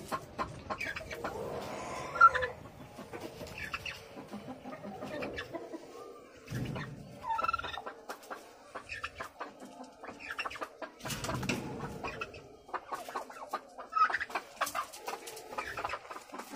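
Penned poultry, chickens and turkeys, clucking and calling in short scattered notes, with a few brief high-pitched calls about two seconds in, midway and near the end, over a run of small clicks and rustles.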